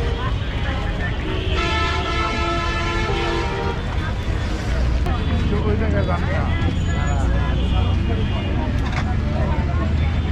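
Busy roadside ambience: a steady low traffic rumble throughout, a vehicle horn held for about two seconds near the start, then the chatter of many voices.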